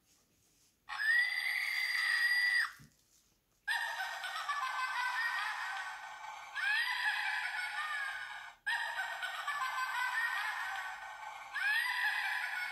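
Witch doll's built-in sound chip playing a recorded witch's laugh through a tiny, tinny speaker: a held shriek about a second in, then two long bursts of shrill laughter, the second repeating the pattern of the first.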